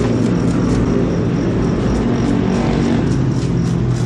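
An engine running steadily nearby, a continuous low hum that shifts slightly in pitch.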